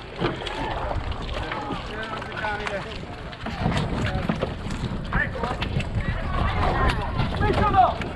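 Several people talking indistinctly close by, louder in the second half, over a low wind rumble on the microphone, with scattered light knocks.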